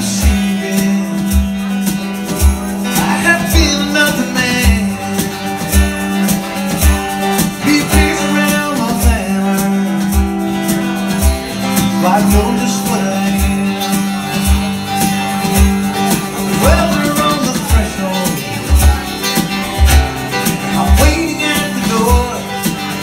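Live acoustic band music: two acoustic guitars strummed over a steady low beat from hand drums, with a man singing lead at several points.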